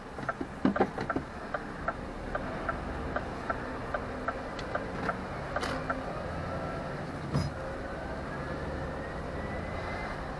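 Inside a lorry cab: the indicator ticks steadily until about halfway through, as the lorry comes off the roundabout, then a whine rises in pitch as it accelerates up the road over the steady engine drone. A few knocks come about a second in and a single sharp knock a little later.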